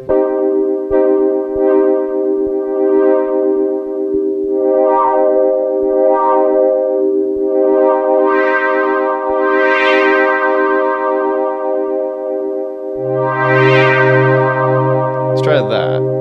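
Roland JU-06A synthesizer holding a sustained pad chord. Its filter is opened and closed by hand, so the chord grows brighter in two slow swells. A low bass note from the sequence comes back in about three-quarters of the way through.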